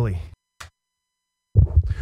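A man speaking into a studio microphone, broken by a pause of dead silence with one faint short click in it; his speech picks up again near the end.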